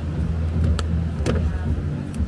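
A machete chopping a green coconut: two sharp knocks about half a second apart over a steady low rumble.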